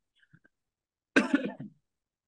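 A man's single short cough about a second in, after a near-silent pause.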